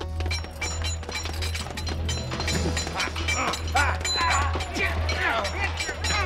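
Background music over a sword fight: metal blades clashing and clinking over and over, with men's shouts.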